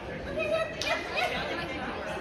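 Background voices chattering in a large indoor hall, with a brief sharp knock about a second in.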